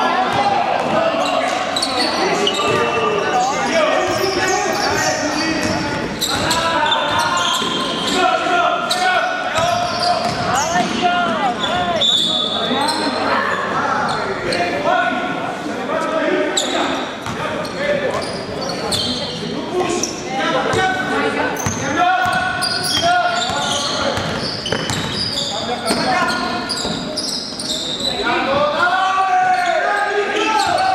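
Basketball game sounds in a large gym hall: a ball bouncing on the court amid players' and spectators' voices calling out, all with the hall's echo.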